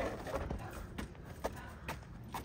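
Footsteps on a concrete sidewalk, sharp evenly spaced steps about two a second.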